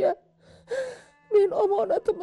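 An elderly woman crying: a short gasping sob, a pause, then crying in a wavering voice from about a second and a half in.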